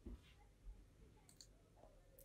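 Near silence, with two faint clicks about a second in and a little later, from a computer mouse.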